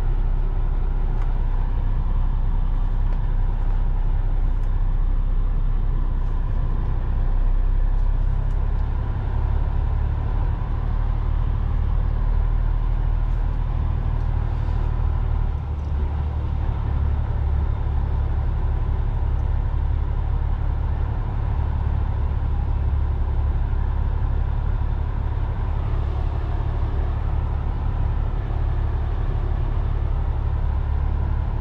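Lorry engine and road noise heard inside the cab: a steady low drone while rolling slowly in traffic. The engine's low note shifts a little higher about halfway through.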